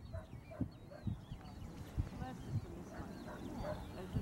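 Wind rumbling on the microphone, with small birds chirping over and over in the background.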